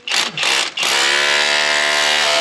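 Cordless drill with a long bit drilling into the rock face: two short bursts of the motor, then from about a second in it runs steadily at one speed.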